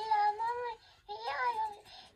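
Animatronic talking baby doll's electronic child voice answering in two short, high, sing-song phrases.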